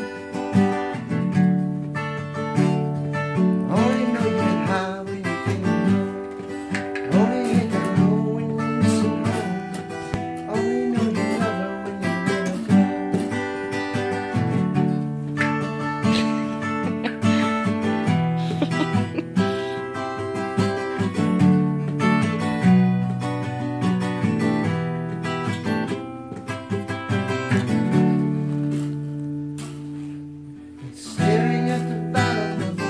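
Acoustic guitar music: chords strummed and ringing continuously, over held low notes that change every second or two.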